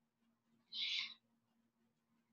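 A short, soft hiss about a second in, over a faint steady hum.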